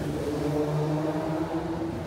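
Road traffic passing close by, with a vehicle engine running in a steady low hum over the general traffic noise.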